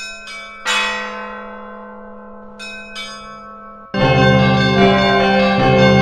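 Church bells struck in two quick groups, three strokes and then two more about two seconds later, each ringing on and slowly fading. About four seconds in, loud sustained music with a deep drone comes in over them.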